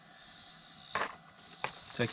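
Steady high drone of insects in the surrounding woods, with a brief rustle about a second in and a light click a moment later as small parts and a plastic bag are handled on a table.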